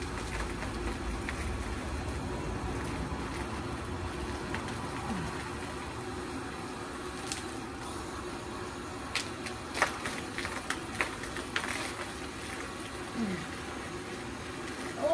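Hose-fed foam sprayer spraying warm soapy water onto a pony's coat, a steady hiss with a faint low hum underneath. A few sharp clicks and taps come in the second half.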